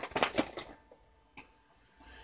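Paper instruction sheet rustling and crackling as it is unfolded and handled, in a quick flurry over the first half-second or so, with one more small click about a second and a half in.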